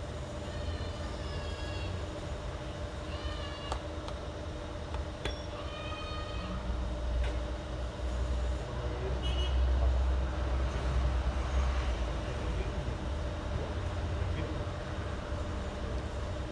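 Dogo Argentino whining in short, high-pitched calls, four or five of them in the first ten seconds, over a steady low rumble that swells around ten seconds in.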